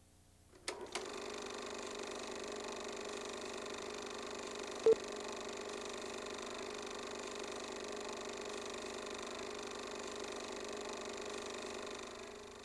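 A film projector running with a steady whirr and hum, starting after a couple of clicks about half a second in. A short loud beep comes about five seconds in, the sync beep of a film countdown leader.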